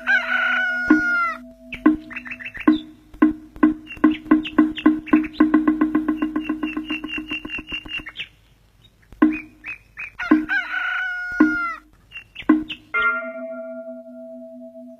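A rooster crowing twice, near the start and again about ten seconds in, over background music with a quickening run of struck beats.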